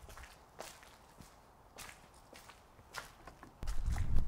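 Faint footsteps of one person walking on paving stones, a little under two steps a second. Near the end a louder low rumble or thud sets in.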